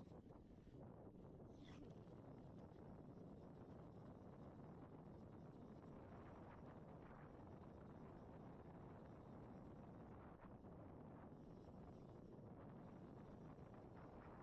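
Faint, steady wind on the microphone and the rumble of a gravel bike's tyres rolling down a dirt trail, with a few small ticks and rattles.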